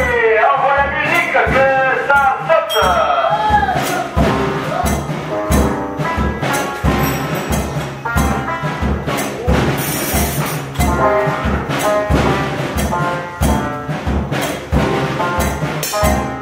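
Home-built mechanical music machine of cymbals, drums and tuned tubes playing a tune with a steady beat of about two strokes a second under brass-like tones. Over the first few seconds a wavering, voice-like line glides up and down above it.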